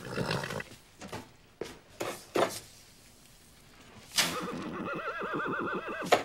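A horse neighing briefly at the start, a few short knocks, then about four seconds in a loud whinny with a quavering, trilling pitch that carries on.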